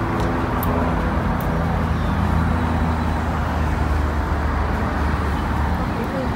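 Car engine running steadily with road or traffic noise: a constant low hum with an even noisy wash over it.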